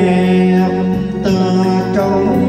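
A man singing long, held notes of a slow Vietnamese ballad over backing music with sustained chords and a light, steady ticking beat.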